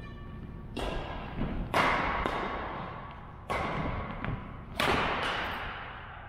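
Badminton racket strings striking a shuttlecock in a rally, about five sharp hits a second or so apart, the loudest near the second and fifth seconds, each echoing in a large gymnasium.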